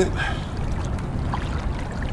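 Water lapping and splashing against a kayak hull, with a steady low rumble of wind on the microphone.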